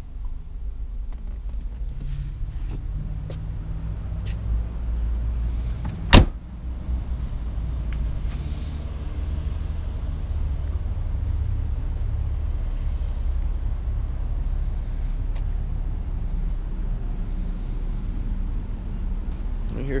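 A car door shut with a single loud slam about six seconds in, over a steady low rumble.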